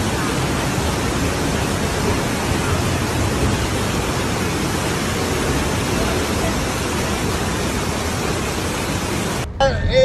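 Torrent of muddy floodwater rushing down a street, a steady loud roar that cuts off suddenly near the end.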